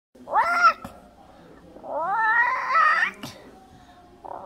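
A person's voice making two high, cat-like creature calls for a toy dinosaur: a short one, then a longer one about two seconds in that rises in pitch. A small click follows the second call.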